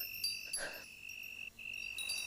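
Faint, steady high-pitched ringing tone in the film's background ambience, with fainter higher ringing tones over it; it breaks off for a moment near the end. A short soft noise comes about half a second in.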